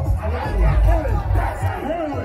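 A dense crowd: many voices overlapping one another, over deep bass from loudspeaker music.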